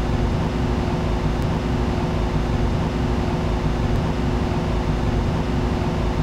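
Steady rushing hum of a biological safety cabinet's blower fan, with a low steady drone under it.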